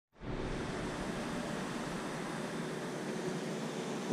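Steady, even hiss with a faint low hum: the running background noise of a large aquarium's water circulation and equipment.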